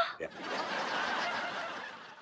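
Sitcom laugh track: recorded audience laughter rises right after a punchline and fades away through the second half.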